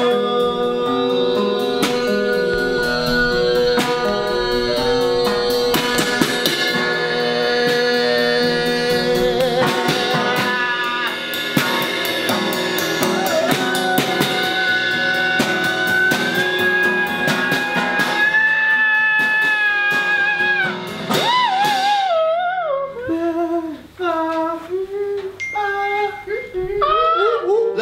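Live band jam in a small room: a drum kit with cymbals playing under guitar chords and a long held melody note. The drums drop out about four-fifths of the way through, leaving a wavering melody line over the chords.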